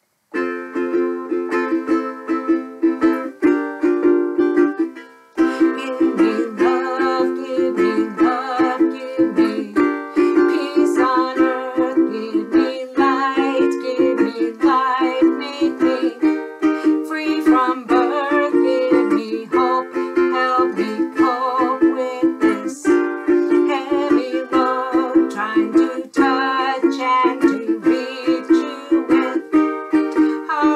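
Ukulele strummed in a steady chord rhythm with a woman singing along. The strumming starts just after the beginning and breaks off briefly about five seconds in.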